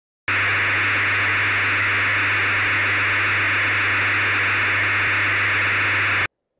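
Steady hiss of radio static with a low hum under it, starting abruptly and holding constant.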